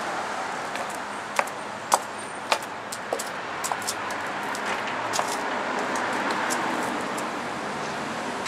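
Steady city street traffic noise. About a second and a half in come three sharp taps half a second apart, footsteps on stone steps, then a few lighter clicks as a heavy door's brass handle is worked.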